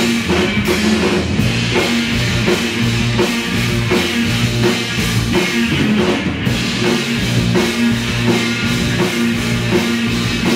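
A live rock band playing an instrumental passage: electric bass, electric guitar, keyboard and drum kit, the drums keeping a steady beat.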